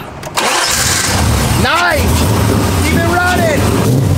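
Chevrolet Camaro engine cranking and catching about half a second in, then settling into a steady low idle.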